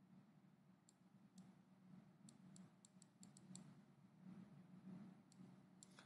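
Near silence with about a dozen faint, sharp clicks, bunched in the middle, from the computer input used to draw and move the molecule on the digital whiteboard, over a faint low hum.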